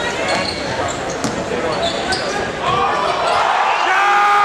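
A basketball being dribbled on a hardwood gym floor under steady crowd noise from the stands, with short sharp sounds from play on the court. The crowd's shouting swells near the end.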